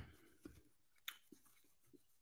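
Near silence, with three faint short clicks.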